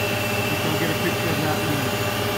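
Dahlih MCV-1450 CNC vertical machining center running, a steady hum with a constant high whine over it.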